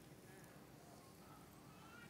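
Near silence: room tone.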